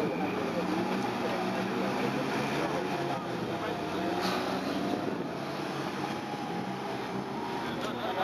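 Two cars' engines, a Toyota Celica and an Opel Corsa, idling steadily side by side at a drag strip start line, a low even hum.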